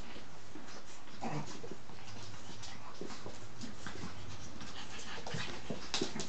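Shih Tzu puppies play-fighting with an adult dog: small whimpers among scuffling and light clicks of paws and claws on a laminate floor.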